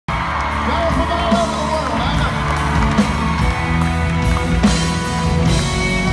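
A live country band, with electric guitars, keyboard and drums, playing a song's instrumental intro at full volume, with steady sustained chords and a drum accent about every second and a half.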